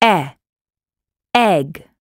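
Speech only: a voice saying the letter sound 'e', then the word 'egg', two short utterances with dead silence between.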